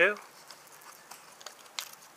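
Faint clicks and rustle of a black plastic-and-nylon knife scabbard and its belt attachment being handled, with one sharper click near the end.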